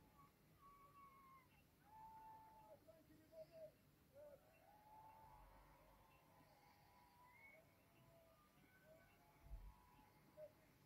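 Near silence: room tone with faint, thin wavering whistle-like tones.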